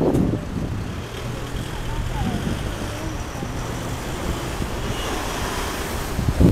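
Steady outdoor city background: a low traffic rumble with wind on the microphone.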